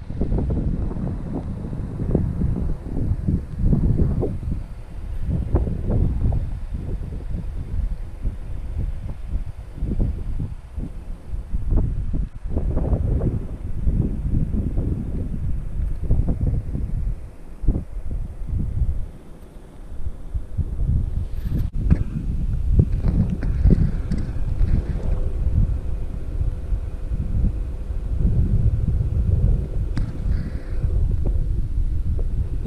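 Wind buffeting the camera microphone: an uneven, gusting low rumble, with a single sharp click about two-thirds of the way through.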